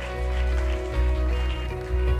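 Live worship band playing an instrumental passage: electric guitars and bass guitar holding steady sustained chords over a strong bass.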